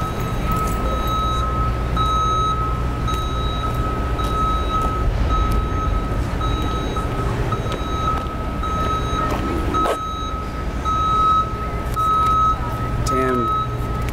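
A vehicle's reversing alarm beeping steadily, about once a second, over a low engine rumble.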